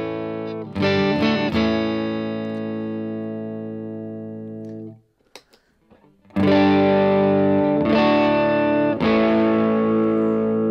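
Music Man electric guitar through an AC-style amp: a few clean chords are strummed and left to ring, fading out. After a short break near the middle, chords are played again louder with the Wampler Tumnus overdrive switched on, giving a nice amount of breakup.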